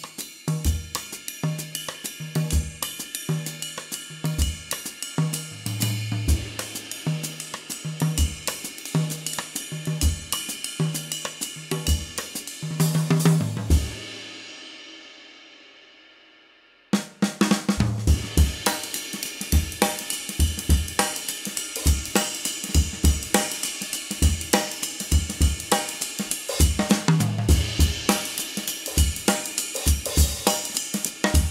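Jazz drum kit being played, the Istanbul Agop 22" Traditional Jazz Ride cymbal ridden over snare, bass drum and tom hits. About 14 s in the playing stops and the ringing dies away over about three seconds, then the playing starts again sharply about 17 s in.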